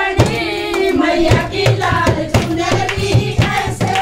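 A group of women singing a Hindu devotional bhajan in unison to steady hand-clapping, with a dholak drum keeping the beat from about a second in.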